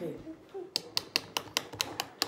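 A quick, even run of sharp light taps or clicks on a hard surface, about five a second, starting a little under a second in, after a spoken "Okay".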